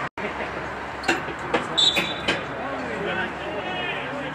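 Field sound of an amateur football match, after a brief dropout right at the start: players calling out on the pitch and a few sharp thuds of the ball being kicked, with a short high-pitched call or whistle about two seconds in.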